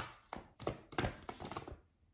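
Tarot cards being shuffled by hand: a run of short, soft taps about three a second.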